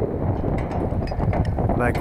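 Wind buffeting the microphone: a steady low rumble, with a few faint clicks in the middle.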